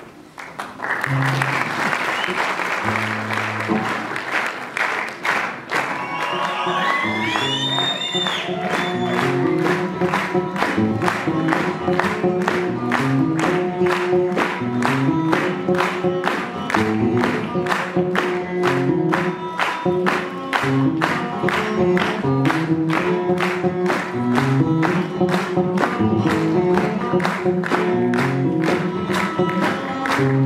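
Applause at the start, with music that has a steady beat and a stepping bass line taking over from about six seconds in.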